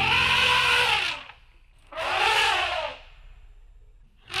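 Elephant trumpeting: two long calls, each rising and then falling in pitch, about a second apart.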